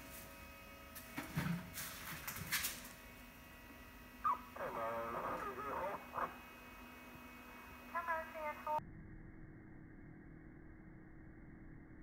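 Short bursts of radio voice traffic from scanners, played through small speakers and sounding thin and narrow, preceded by a few sharp clicks. Near the end the sound drops abruptly to a dull steady hum.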